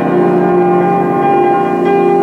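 Grand piano playing held chords that ring on, with new notes struck at the start and again near the end.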